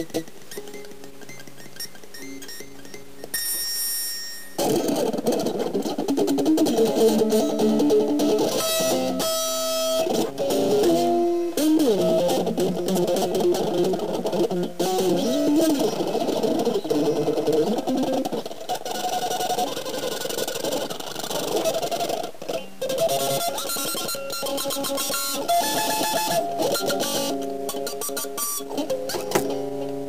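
Sped-up guitar solo: a fast run of quick notes, quieter for the first few seconds and louder from about four seconds in.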